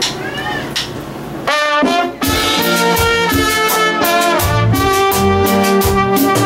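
A trumpet comes in with a held note about a second and a half in, then leads a melody over a full band playing a steady beat: the start of a live gospel song.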